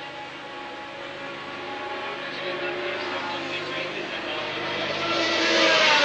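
Formula One racing cars' engines at high revs, a steady high engine note that grows louder over the last second or two as the cars draw nearer.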